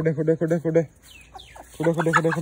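Chickens clucking: quick, evenly spaced clucks at one steady pitch, in a run that stops just under a second in and another that starts near the end.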